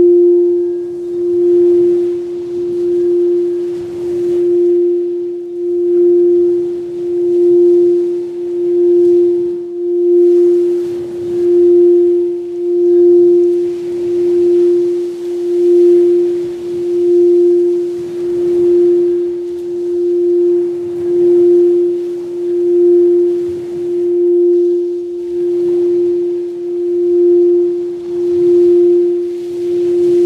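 Singing-bowl drone from a sound-bath track: one steady low tone with faint higher overtones, pulsing louder and softer about every second and a half.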